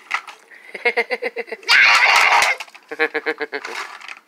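A child giggling in quick repeated bursts, with a loud breathy burst of laughter about two seconds in.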